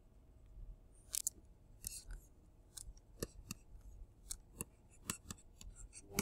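A pen stylus tapping and scratching on a tablet screen while handwriting: a faint string of short, irregular clicks, about two or three a second.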